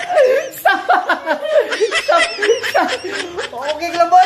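Laughter and chuckling, with some talk mixed in.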